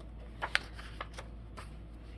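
A coloring book's paper page being turned: a short crisp flick about half a second in, followed by a few fainter ticks of paper.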